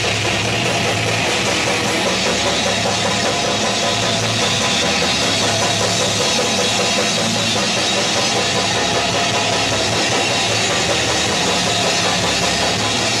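Live metal band playing loud and without a break: distorted guitars and bass over a drum kit, in a thick, saturated recording.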